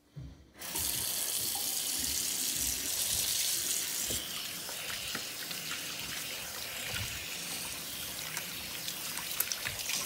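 Bathroom sink faucet turned on about half a second in, its water running steadily into the basin while hands are rubbed and rinsed under the stream.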